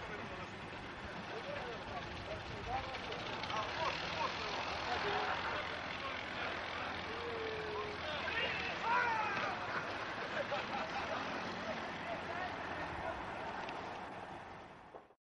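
Indistinct voices over a steady rushing noise.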